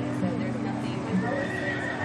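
A horse cantering on sand arena footing over a course of show fences, against steady background music.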